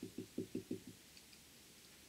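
Felt-tip marker tapping against a whiteboard in quick succession as a dotted line is drawn: about six short taps in the first second.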